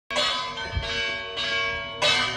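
Church bells ringing, a new stroke about every 0.6 s, each one ringing on under the next.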